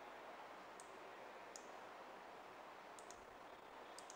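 Near silence with a handful of faint, sharp clicks, two of them in quick succession about three seconds in, as text is selected and a menu is opened on a computer.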